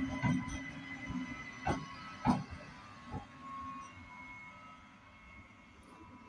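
A pair of coupled Siemens Vectron electric locomotives passing, their wheels clacking over rail joints four times in the first few seconds, with a faint electric whine. The sound fades steadily as they move away.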